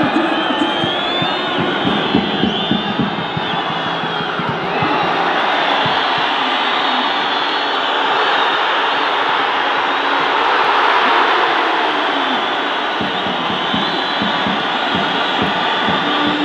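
Stadium crowd at a football match: a dense, steady noise of thousands of voices from the stands that swells about halfway through, with some high whistling in the first few seconds.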